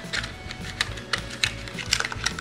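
Irregular light clicks and taps of small cosmetic packages being picked up, shuffled and set down in a box, about half a dozen in two seconds.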